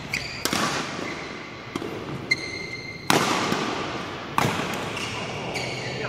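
Badminton rackets striking a shuttlecock in a doubles rally: several sharp hits, the two loudest about three and four and a half seconds in, echoing around a large hall. Short high squeaks of court shoes on the floor come between the hits.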